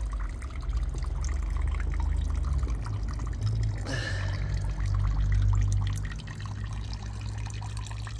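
Thin stream of freshly distilled spirit running from a still's copper outlet pipe into a plastic tub of liquid, splashing steadily, with a low rumble underneath.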